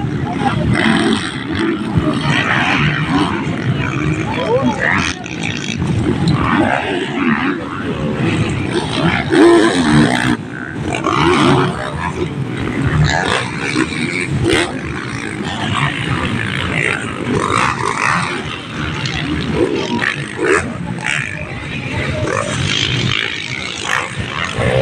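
Several motocross dirt bikes' engines revving hard, with spectators' voices mixed in.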